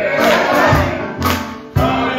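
Gospel song sung by several voices with instrumental accompaniment keeping a steady beat, about two beats a second.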